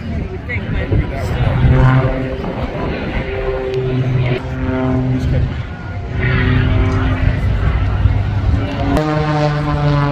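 Propeller engine of a small aerobatic plane droning overhead, its pitch holding steady for a second or so at a time and then stepping up or down as it manoeuvres, jumping higher near the end. A public-address voice is mixed in.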